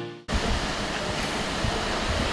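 Background music cuts off abruptly just after the start, giving way to a steady rushing noise of wind on the microphone.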